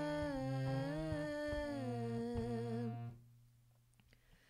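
A voice humming a shabad melody in stepping and sliding notes over a Nagi harmonium's held reed notes. Both stop about three seconds in.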